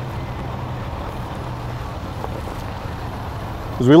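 Steady low hum over a faint even hiss, with no distinct knocks or steps; a man's voice begins right at the end.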